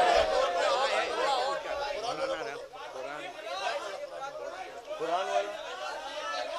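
Chatter of many men's voices at once, overlapping with no single voice leading. It is louder in the first couple of seconds, then settles lower.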